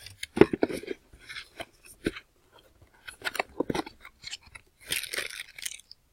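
Plastic packaging crinkling and rustling in short bursts, with small clicks and knocks, as a bagged Ethernet cable is pulled out of a cardboard product box; the longest rustle comes near the end.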